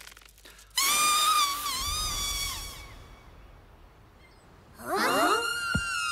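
Blade-of-grass whistle blown as a distress call: a reedy, wavering tone held for about two seconds, then, after a pause, a second blast that rises into a steady higher note near the end.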